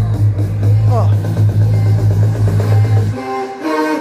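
Music playing loud through a Philips NX5 tower party speaker with heavy bass, turned up to maximum volume; about three seconds in, the bass suddenly drops out while the rest of the music keeps playing. The speaker cuts its bass once the volume goes past 28, a fault the owner counts among its problems.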